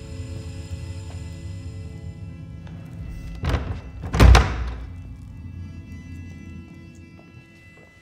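A heavy front door shuts with a loud, deep thud about four seconds in, just after a smaller knock, over film score of low sustained tones that fades toward the end.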